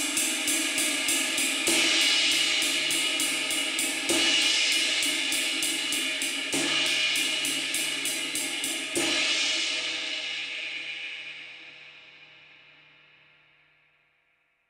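Istanbul Agop 22-inch Traditional Jazz Ride played with a stick: a steady pattern of pings on the top of the cymbal, crashed about every two and a half seconds, with the stick strokes still clear right after each crash. The last crash, about nine seconds in, is left to ring and fades out over about four seconds.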